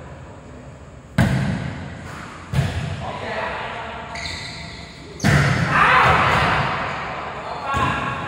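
Three sharp smacks of a volleyball being played, about a second in, about two and a half seconds in and just past five seconds, each echoing around a large indoor hall. Players shout after the third.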